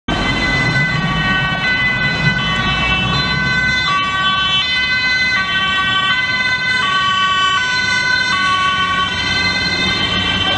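Dutch ambulance two-tone siren, switching between a high and a low pitch about every three quarters of a second as the ambulance drives by on an urgent call. Low road-traffic rumble underneath, strongest in the first few seconds.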